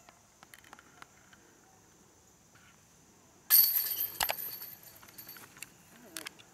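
A putted disc, a Magma Soft Tui putter, strikes the chains of a metal disc golf basket about three and a half seconds in: a sudden loud crash of chains that jangles and fades over about two seconds.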